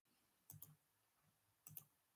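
Near silence with two faint pairs of short clicks, one about half a second in and one near the end.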